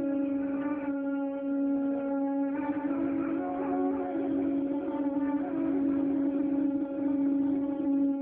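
Live Azerbaijani music: a man singing mugham-style into a microphone, with guitar accompaniment over a steady held low drone.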